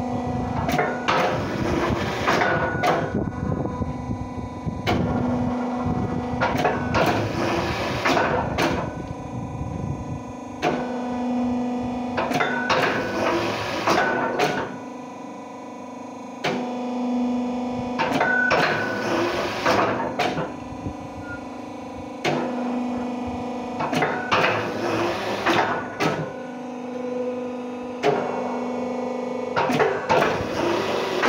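Hydraulic rotary fly ash brick press running through its automatic cycle, repeating about every six seconds: a steady pitched hum alternates with noisy stretches of sharp knocks and clanks.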